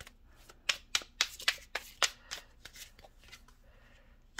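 A tarot deck shuffled by hand: a series of sharp card slaps and flicks, irregular, about three a second.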